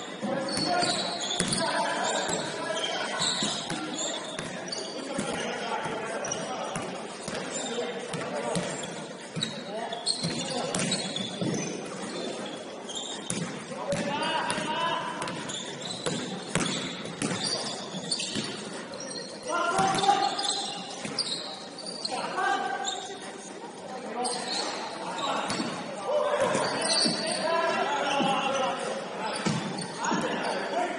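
A basketball bouncing on a hardwood gym court amid players running, with players' voices calling out across the court, all echoing in a large hall.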